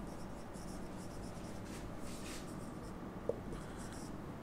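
Faint scratching of a marker pen on a whiteboard as words are written, coming in short strokes, with a brief tick a little over three seconds in.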